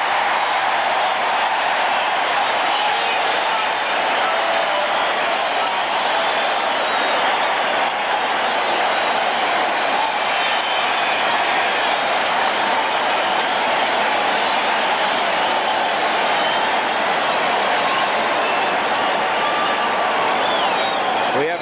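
Stadium crowd cheering and applauding a touchdown, a loud, steady wall of many voices and clapping.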